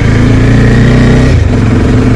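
Bajaj Dominar 400's single-cylinder engine running as the motorcycle rides along, heard from a helmet-mounted camera, its note changing about a second and a half in.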